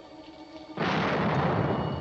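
A sudden explosion about a second in, its low rumble lasting about a second and a half, over quiet background music.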